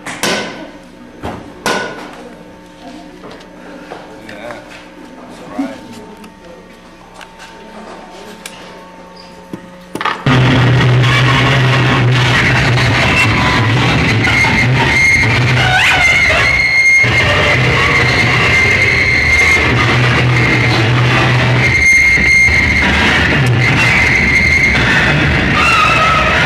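Live harsh noise music from a table of pedals and electronics through an amplifier. It opens on a steady electrical hum with a couple of sharp knocks, then about ten seconds in a loud wall of harsh noise kicks in all at once: a low droning tone that cuts out a few times, with a squealing whine above it.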